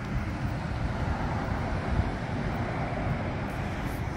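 Outdoor street noise: wind rumbling on the microphone over a steady hum of traffic, swelling a little in the middle.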